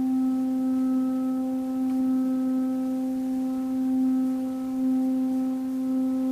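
Kyotaku, the long end-blown Zen bamboo flute, holding one long steady note with gentle swells in loudness.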